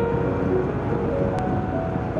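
Steady rushing road and wind noise from a moving vehicle, with a song's melody in held, stepping notes on top of it.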